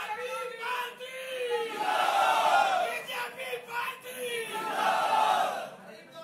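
A crowd of party workers shouting slogans in unison, call and response: a lone voice leads, then the crowd answers in two loud swells, about two seconds and five seconds in.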